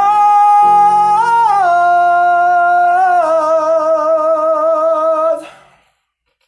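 A male voice holds the last sung note of the song over sustained keyboard chords. The note lifts briefly and settles back, then wavers with vibrato before the voice and chords stop together about five and a half seconds in.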